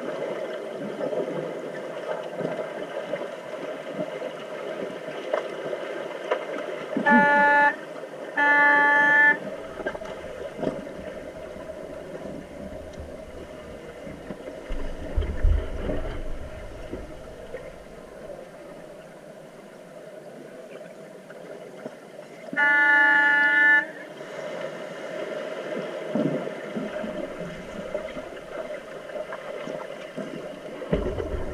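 Underwater referee horn in a pool, heard underwater. It gives two short blasts about a second apart, then one longer blast later on. Between them is a steady underwater rush of bubbles and swimmers churning the water.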